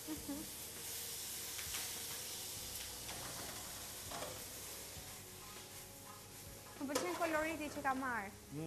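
Strips of red and green bell pepper sizzling in a frying pan, stirred with a silicone spatula; a steady frying hiss with a few faint strokes of the spatula.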